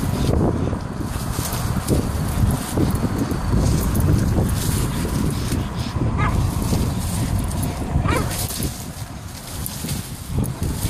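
Jack Russell terrier hanging by its teeth from a palm frond and swinging, with two short rising whines about six and eight seconds in, over steady low rumbling noise.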